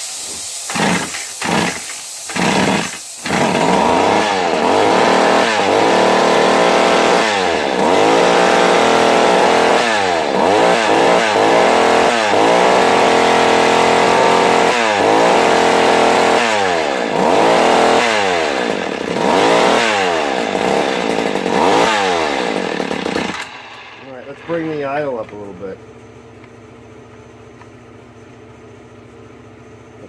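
McCulloch Mac 110 two-stroke chainsaw coughs a few times and catches, then revs up and down again and again under the throttle in its first run after restoration. About three-quarters of the way through it drops back to a quieter, steady idle.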